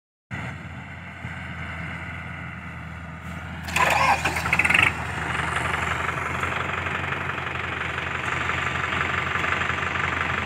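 Kubota MU4501 tractor's four-cylinder diesel engine running at idle, with a loud burst of noise about four seconds in, after which the engine runs louder and steady.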